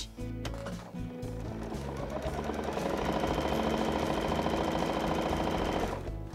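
Household electric sewing machine stitching a seam through layered cotton fabric, running up to speed over the first two seconds or so and then holding steady, with background music underneath.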